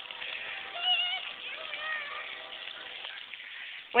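Splash-pad water jets hissing steadily, with distant children's voices calling out about one and two seconds in.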